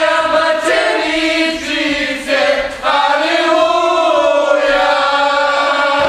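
A group of voices singing together, a chant-like song with a long held note in the second half.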